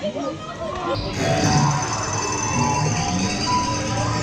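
Max & Moritz family coaster train rolling out of its station, its running noise rising and filling in about a second in, with music and voices mixed in.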